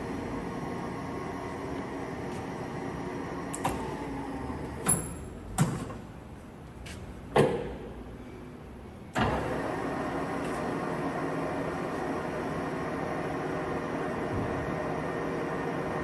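Sharpe 1880CL engine lathe running steadily under its 10 hp motor. Several sharp clunks come from about four to seven seconds in as the headstock controls are worked, and the running sound drops away. At about nine seconds the drive cuts back in with a sudden step and runs steadily again.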